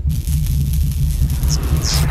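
Horror film trailer soundtrack: a deep, pulsing bass drone under a hiss of static, with two quick high whooshes near the end.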